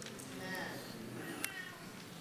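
Faint, high-pitched voice-like sounds over quiet room tone, with a small click about one and a half seconds in.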